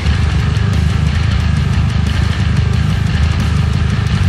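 Heavy metal music with a six-string Dingwall NG3 bass, played through a Darkglass Adam preamp, playing a dense low riff that runs on without a break.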